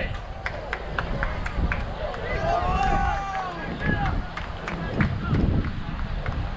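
Voices shouting across a baseball field, one long call about two and a half seconds in, with scattered short sharp clicks and knocks and a low wind rumble on the microphone.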